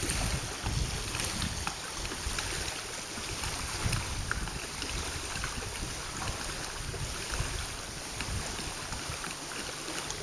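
Wind buffeting the microphone in uneven gusts, over a steady hiss of small waves lapping at the lake shore.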